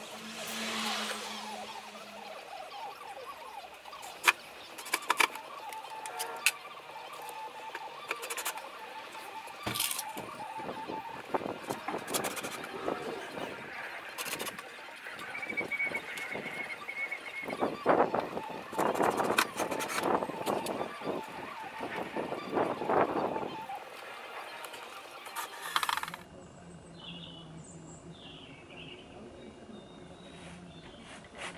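Cordless drill driving screws into a plywood cabinet in short runs of the motor, amid knocks and clatter as the cabinet is handled. About 26 s in it gives way to quieter handling sounds.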